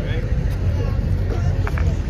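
Wind rumbling on the microphone as a steady low buffeting, with faint voices of people around.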